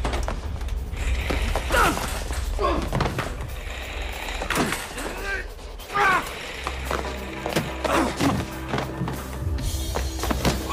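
Action-film music score with fight sound effects laid over it: about half a dozen swishing blows and thuds, roughly one every second or two, the loudest near 2 and 6 seconds in, with grunts and the clatter of a metal hospital gurney being knocked about.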